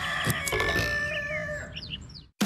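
Rooster crowing sound effect in a jingle: one long held crow, followed near the end by a few short bird chirps as it fades out.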